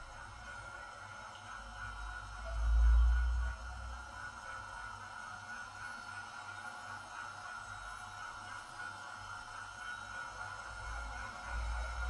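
A faint steady high hum, with a deep rumble that swells and fades about three seconds in.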